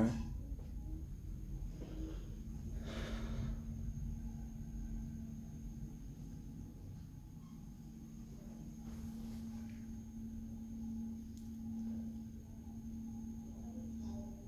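Steady low hum in a KONE EcoDisc traction lift car, with a brief rushing sound about three seconds in.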